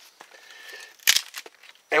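A wooden digging stick jabbing into dry leaf litter and rotted debris in the hollow base of a tree: one brief crunching rustle about a second in, with lighter scraping around it.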